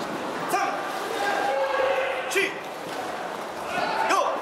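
Indistinct voices echoing in a large sports hall, over a steady background murmur.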